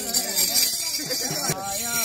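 Several people talking at once, over a steady high metallic jingling like a shaken tambourine.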